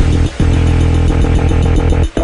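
Dubstep electronic music built on a heavy, buzzing synth bass note, with a brief break about a third of a second in.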